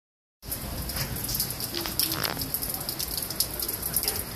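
Rain falling steadily on a wet street and nearby surfaces, with many separate drops hitting close by.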